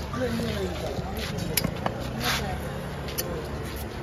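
Background voices talking, not close to the microphone, with a few sharp clicks and a brief hiss over a low steady hum.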